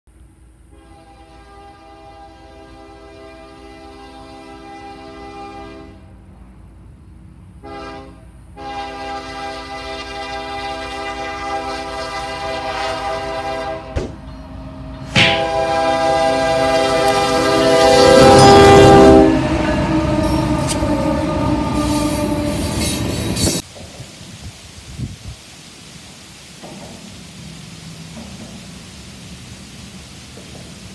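Union Pacific diesel freight locomotive's air horn blowing several long blasts and one short one as the train approaches. The horn grows louder and is followed by the locomotives and hopper cars rumbling and clattering past. The sound cuts off abruptly near the end to a steady hiss of rain.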